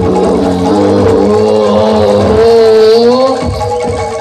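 Live Javanese gamelan music for Jaranan Dor: a loud, held melodic line that bends up and down in pitch over a steady drone, with the drumming thinning out and coming back in near the end.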